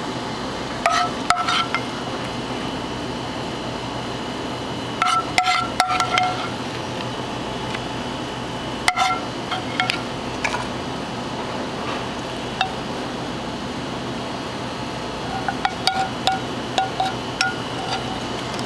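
Metal spoon and fork clinking against a frying pan and a ceramic plate as sauce is spooned over plated chicken: short ringing taps in a few clusters, over a steady background hum.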